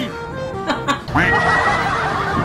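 Background music, with a few short snickering laughs about a second in, running into continuous laughter.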